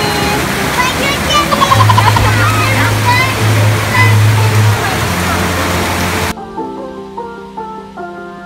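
Heavy rain pouring down, with voices laughing and shouting over it; about six seconds in it cuts off suddenly and background music takes over.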